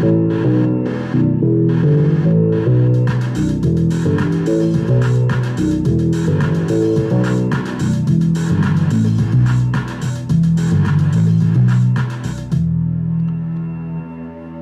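Step-sequenced electronic loop from a BeatStep Pro playing through Ableton Live: a synth bass line with drum hits in a steady rhythm. It stops abruptly near the end, leaving a held low note that fades out.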